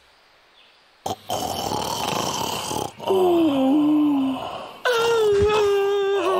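A cartoon character's non-speech vocal sounds after a brief silence: a noisy breathy stretch, then a falling moan, then a long call held at one pitch near the end.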